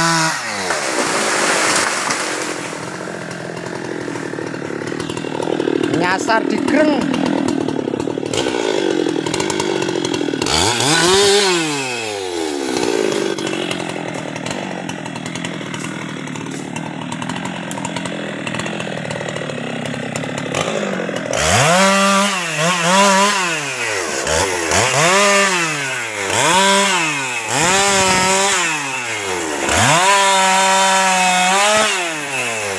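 Husqvarna 390 XP two-stroke chainsaw. It drops off a full-throttle cut to idle at the start and revs once briefly near the middle. From about two-thirds of the way in it gives about six throttle blips, roughly one and a half seconds apart, then opens up to a steady full-throttle cut at the very end.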